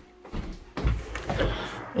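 A few dull thumps and rustles of footsteps and a wooden door being handled and pushed open.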